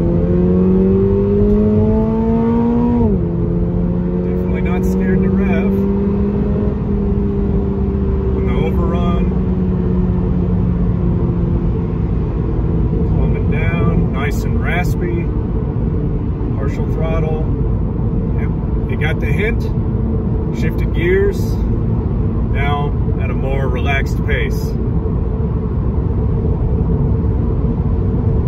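2022 Toyota GR86's 2.4-litre flat-four boxer engine under hard acceleration, heard from the cabin. The revs climb, then the six-speed automatic upshifts about three seconds in with a sudden drop in pitch. The engine note then rises slowly and eases off, leaving steady road and tyre noise.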